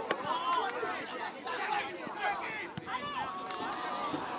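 Several people's voices calling out and chattering across a football pitch during play, with a sharp knock right at the start.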